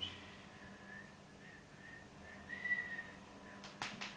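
A person softly whistling a wavering, broken little tune, loudest a little past halfway, over a low steady hum. A sharp click near the end.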